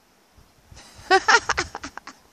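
A brief pause, then a woman's short laugh in a few quick breathy pulses.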